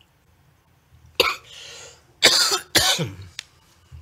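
A person coughing three times: one cough about a second in, then two sharper coughs in quick succession.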